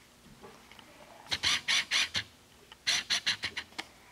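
Paper card and cardboard being handled: two quick runs of short scratchy rustles, about five strokes, a pause, then about seven more.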